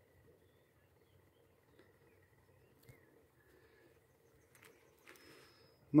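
Near silence: faint outdoor field ambience, with a couple of soft clicks near the end.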